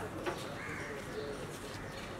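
A bird calling over steady outdoor background noise, with a single short click about a quarter second in.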